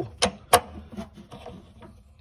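Metal hand tool clicking against the hex head of a water heater's anode rod as it is worked loose: two sharp clicks in the first half-second, then a few lighter ticks that fade away.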